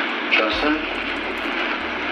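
A brief snatch of a man's voice over a steady rushing background noise, with a low hum that comes in about half a second in.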